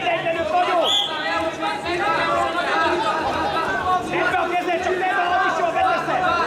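Several people's voices calling out and chattering over one another in an indoor arena, with a short high tone about a second in.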